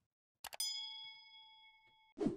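A couple of short clicks, then a single bright bell-like ding that rings on and fades away over about a second and a half: the notification-bell sound effect of a subscribe-button animation.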